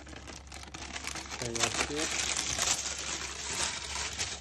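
Baking paper crinkling and rustling as it is tipped and pulled away, sliding oven-roasted cherry tomatoes into a steel food-processor jug. A brief vocal sound about one and a half seconds in.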